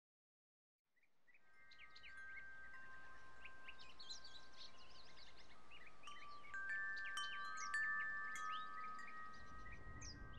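Metal-tube wind chime ringing, fading in out of silence about a second in, its long overlapping tones joined by short high chirps.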